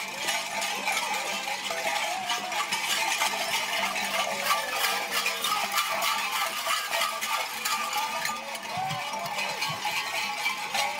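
Metal bells clanking and jingling busily and without pause, with faint music underneath.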